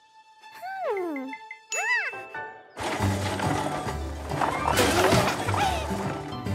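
Cartoon soundtrack: two short gliding tones, the first falling and the second a quick rise and fall, over a held ringing note, then background music with a steady bass comes in about three seconds in.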